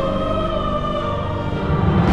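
Dramatic background score with held choral voices over sustained instruments.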